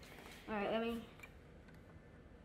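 A brief wordless voice sound lasting about half a second, then a couple of faint clicks from the plastic dust bin of a toy cordless vacuum being handled. The toy's motor is not running.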